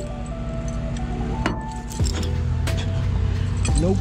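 Steel tow chain clinking in several sharp knocks as it is handled against the truck, over steady background music.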